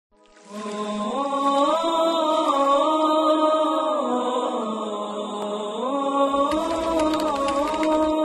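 Theme music of a single voice chanting long held notes that step up and down in pitch. A deep rumble and a run of sharp hits come in near the end.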